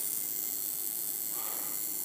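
Steady hiss and buzz of a high-voltage spark gap driven by a neon sign transformer, running continuously.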